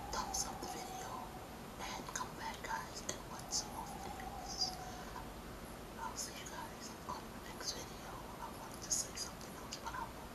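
A woman whispering close to a microphone, with crisp hissing 's' sounds scattered through the whisper.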